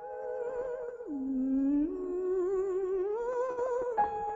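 A woman's classical voice singing slow, held notes with a wide vibrato. About a second in, the line drops nearly an octave, then climbs back up in steps to the high note near the end.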